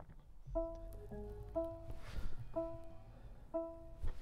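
Mercedes EQS 580's electronic start-up sound as the car powers on: a gentle melodic sequence of pitched notes that begins about half a second in, with one note recurring about once a second and other notes in between.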